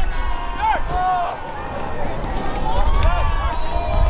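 Several voices shouting and calling across a soccer field during play, overlapping and too distant to make out words, over a steady low rumble.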